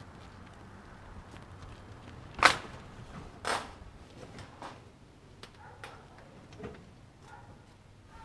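Metal hand dolly loaded with a rolled-up bounce house, rolling and clanking as it is pushed onto a trailer: a few sharp knocks, the loudest about two and a half seconds in, then a second about a second later and fainter ones after.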